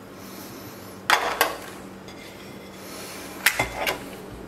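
A ceramic bowl knocking against a bamboo cutting board as a ball of dough is turned out of it. There are two sharp knocks about a second in and a quick cluster of knocks near the end.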